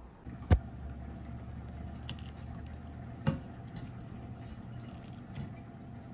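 Two sharp knocks, a loud one about half a second in and a softer one near the three-second mark, over a steady low background hum.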